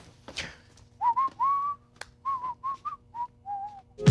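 A person whistling a short tune of about eight notes, some sliding up into pitch, starting about a second in. There is a single sharp click midway through.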